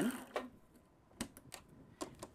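A sewing machine's bobbin winder, winding elastic thread, whirs faintly and dies away within the first half second. Then come five or so light, sharp clicks and taps from handling the machine and bobbin in the second half.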